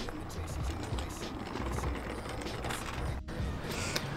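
Low, uneven rumble of a stunt scooter's small wheels rolling over brick pavers, cutting out briefly about three seconds in.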